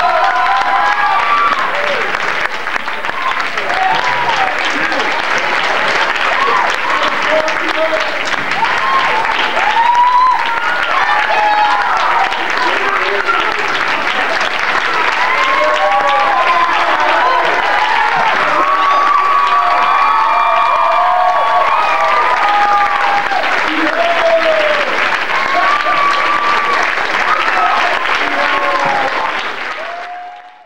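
Audience applauding steadily, with many voices cheering and whooping over the clapping. It fades out at the very end.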